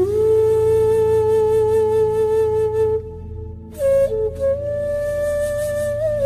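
Background music: a flute playing long held notes, with a slight bend into each, over a steady low drone. One note is held for about three seconds, the music dips briefly, and a higher note comes in about four seconds in.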